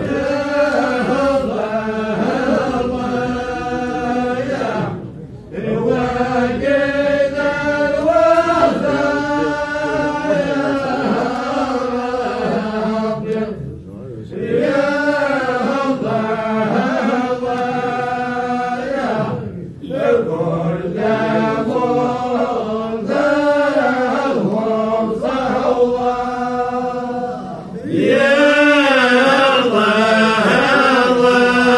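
Voices chanting together in long, melodic phrases, with brief pauses every several seconds between phrases.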